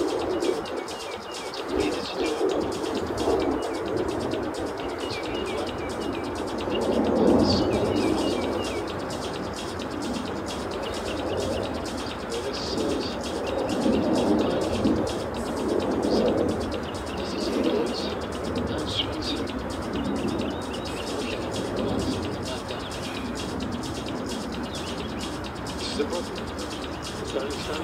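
Small birds chirping intermittently outdoors, over a louder low background noise that swells and fades every few seconds.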